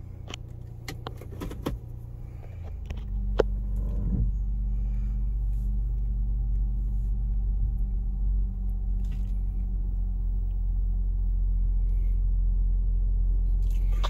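Cabin sound of a 2018 Dodge Journey with its 3.6-litre V6 running: a steady low hum with a few clicks and taps in the first couple of seconds. About three seconds in, a deeper low rumble sets in and holds steady as the car creeps forward in Drive at walking pace.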